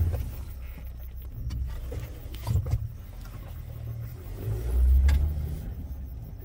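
A car's engine running at low speed: a steady low rumble that swells for a moment about five seconds in. A few light knocks come through, at the start and about halfway.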